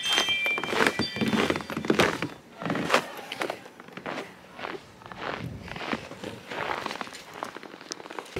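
Footsteps in fresh snow, about two steps a second.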